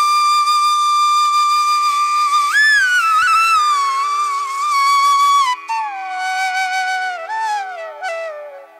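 Background flute music over a steady drone. A long held note bends up about two and a half seconds in, and the melody then steps downward in a slower phrase in the second half.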